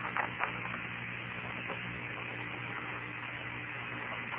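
Steady hiss with a low hum on an open Apollo 16 air-to-ground radio voice channel between transmissions, with a few faint clicks near the start.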